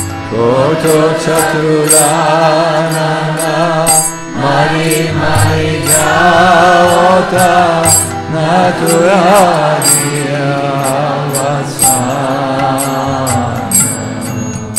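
A man singing a Vaishnava devotional chant in a slow, wavering voice with vibrato, over a steady low drone. Small hand cymbals clink at a regular beat.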